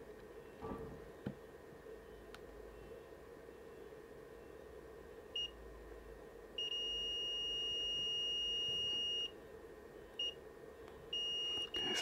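Multimeter continuity tester beeping as its probes touch points on a circuit board: one high steady tone, first a short beep, then a long beep of almost three seconds, a short beep, and two more near the end. Each beep marks a point with continuity to ground.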